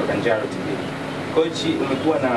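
Speech in Swahili in short phrases, over a steady low hum.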